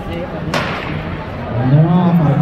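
A starting gun fires once, about half a second in, a sharp crack that echoes briefly and signals the start of a 60 m sprint heat. Near the end a loud, drawn-out yell from the crowd rises over it.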